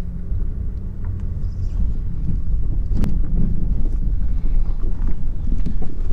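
Car cabin noise while driving: a steady low rumble of engine and road, with one sharp click about three seconds in.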